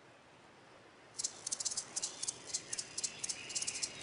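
Faint, quick, irregular high-pitched rattling clicks over a faint hiss, starting about a second in.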